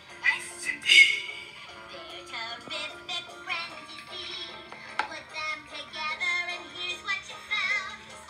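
A children's cartoon song: a character singing over music, played back through a phone's speaker.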